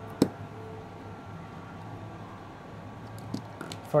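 Hands fitting a wire into a small screw terminal block on a circuit board: one sharp click about a quarter second in, then a few faint clicks near the end over a low, steady hum.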